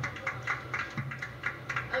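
Scattered handclaps from a small crowd, several claps a second at an uneven rhythm, over a low steady hum.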